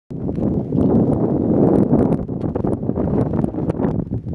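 Wind buffeting the camera microphone: a loud, fluctuating rumble, with faint short ticks above it.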